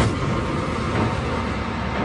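Intro sound effect: a sharp hit, then a steady, loud rushing noise over a low rumble.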